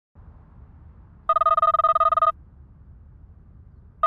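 Smartphone ringing with an incoming call: a trilling electronic ring lasting about a second, starting a little over a second in, with the next ring starting at the very end. A faint low hum lies underneath.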